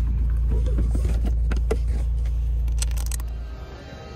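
Low, steady rumble inside a moving car's cabin, with a few light clicks and rattles over it; it fades out near the end.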